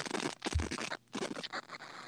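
Scratchy, crackling noise on the audio line, irregular and rough, with a short thump and a brief dropout to silence about a second in: an unwanted noise on the call that the speakers notice.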